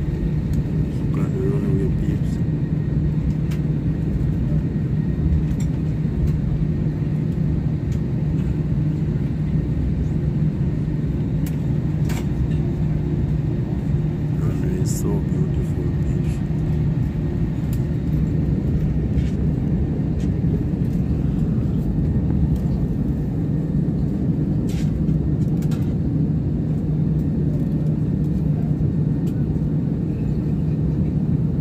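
Steady low hum and rumble of an airliner's jet engines heard from inside the cabin as the plane taxis, holding an even level with no spool-up.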